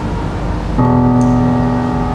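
Live jazz band music led by a grand piano; a new, louder chord comes in about a second in and is held.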